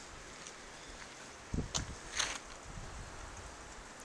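Steady rush of a river in flood, with a few short thumps and scuffs about a second and a half in.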